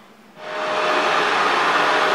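Proscenic M7 Pro laser robot vacuum running in normal cleaning mode on a hardwood floor: a steady whir with a faint steady whine in it, starting about half a second in.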